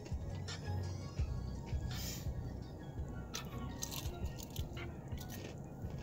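A person chewing a mouthful of breaded fried shrimp close to the microphone, with irregular crisp crunches as the batter and tail are bitten through, over faint background music.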